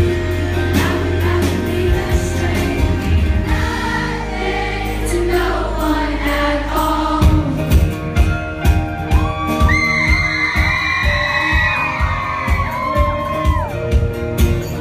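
Live rock band playing through a club PA, with amplified singing over bass and guitars. A steady drum beat comes in about seven seconds in, and a high, held lead guitar line sounds near the end.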